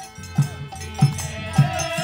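Kirtan music: a harmonium holds sustained chords while a khol barrel drum is struck in a steady beat, a stroke about every 0.6 s, with a light metallic jingle above. A wavering held tone, likely a voice, comes in near the end.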